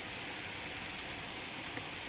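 Steady hiss of background room noise, with a couple of faint ticks.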